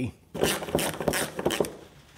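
Clicking and scraping of plastic and metal as a new transmission governor pressure solenoid is pushed and worked by hand into its metal housing, for about a second and a half.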